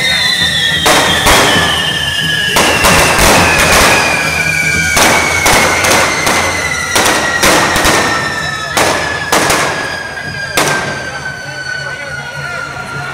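Correfoc pyrotechnics: about eighteen firecracker bangs in irregular clusters over the steady hiss of a spark fountain, thinning out after about ten seconds. A long whistle slowly falls in pitch throughout.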